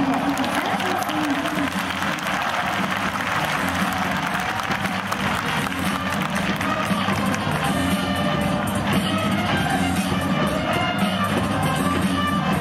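Music playing over a baseball stadium's PA, with the crowd clapping and cheering. From about seven seconds in, held musical notes come through more clearly over the crowd noise.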